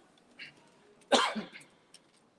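A single loud cough about a second in, short and sudden, over quiet room tone.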